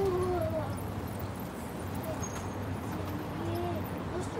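Marker tip squeaking on a glass pane during drawing strokes: two short squeals, one at the start and one about three seconds in, over a low murmur of room noise.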